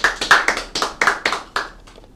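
Hand clapping at the end of a talk, a quick run of about five claps a second that stops near the end.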